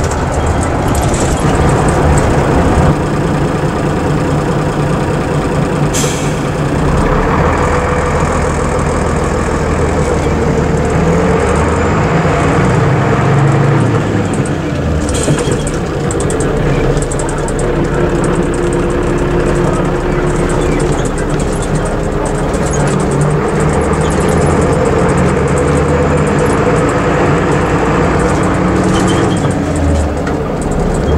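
Ikarus EAG E95 coach's Scania diesel engine running under way, heard from inside the passenger cabin along with tyre and road noise. The engine note changes pitch several times as the speed changes, and there is a sharp click about six seconds in.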